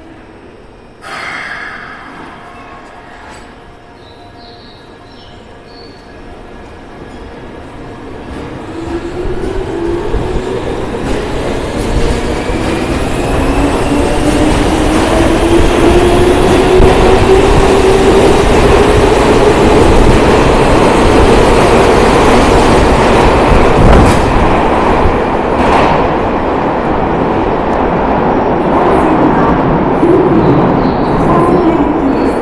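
Toei 10-000 series subway train pulling out of an underground station. A sudden hiss-like burst comes about a second in, then the traction motors' whine rises steadily in pitch as the train accelerates. It swells into a loud, steady run of motor and wheel noise as the cars pass, with a sharp knock from the wheels near the end.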